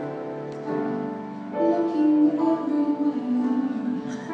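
Live piano playing a slow jazz ballad, sustained notes and chords changing every second or so.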